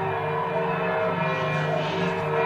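Church bells ringing over music from a film soundtrack, played back over loudspeakers in a hall. Several steady ringing tones overlap throughout.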